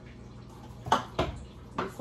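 Three short knocks of kitchen items being handled at an open cabinet shelf, the first, about a second in, the loudest.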